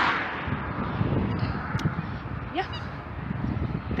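Wind buffeting a handheld phone's microphone outdoors, a low, uneven rumble.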